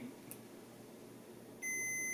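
A digital multimeter's continuity beeper gives a steady high-pitched tone, starting about one and a half seconds in after a quiet stretch. The beep signals a closed circuit, with continuity between the probes.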